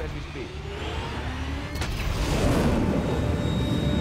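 Sound effects from a TV episode's soundtrack: a low, noisy rumble that swells steadily louder, cut off abruptly just after it ends.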